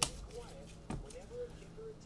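Trading cards and plastic card holders being handled and set down on a table: a sharp tap at the start and a weaker one about a second in.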